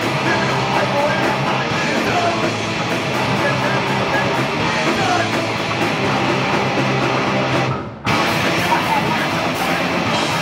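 Punk rock band playing live: distorted electric guitar, bass guitar and drum kit. The sound drops out briefly about eight seconds in and comes straight back.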